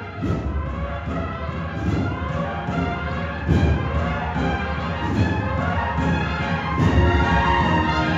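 Cornet and drum band playing a processional march: massed cornets and tubas sound sustained chords over heavy bass drum strokes that fall roughly every one and a half to two seconds.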